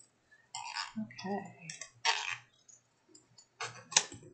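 Micro-serrated craft scissors cutting through chipboard: a few short, separate snips, the last ending in a sharp click near the end.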